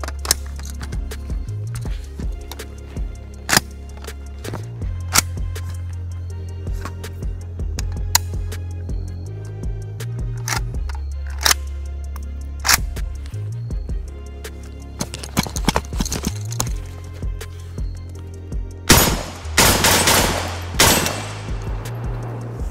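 Background music with a steady bass line over rifle shots from a Palmetto State Armory AK-47 in 7.62x39, fired one at a time at uneven intervals. A quick run of shots near the end is the loudest part.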